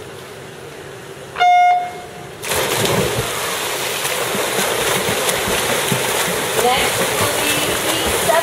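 A swim-race start signal sounds once, a short loud tone about a second and a half in. About a second later, splashing water rises sharply and goes on steadily as the field dives in and swims freestyle.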